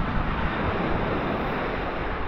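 Surf from small waves breaking on a sandy beach, a steady wash of noise, with wind buffeting the microphone.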